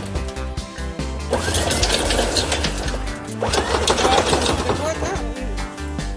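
Electric anchor windlass hauling in barnacle-encrusted anchor chain in two short runs, its motor spinning up and the chain clattering over the gypsy. Background music plays underneath.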